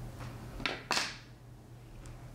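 Fly-tying scissors snipping twice, about a quarter second apart, the second louder, as they cut the butt ends of moose body hair tied on a hook.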